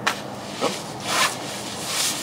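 Rustling and swishing of the thin 10-denier nylon shell of a Patagonia Macro Puff insulated jacket as the arms and hood are moved, with a louder swish about a second in.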